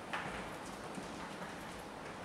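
Shoe footsteps on a hard tiled corridor floor: one sharp step just after the start, then fainter steps about twice a second as the walkers move away, over a steady hiss.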